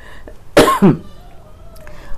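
A woman's single short cough, about half a second in.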